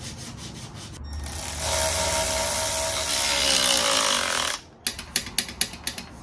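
A handheld power tool runs steadily for about three and a half seconds and winds down, then a ratchet clicks rapidly several times while clutch pressure-plate bolts are run down on the flywheel.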